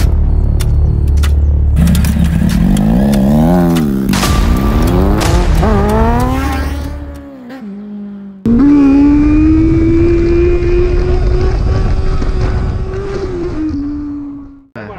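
Kawasaki Z800 inline-four motorcycle engine revving hard, its pitch swinging up and down in quick blips for about seven seconds. After a brief lull it returns as one long engine note that climbs slowly and drops away near the end.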